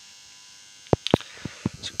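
A faint steady hum, then several short sharp clicks in the second half.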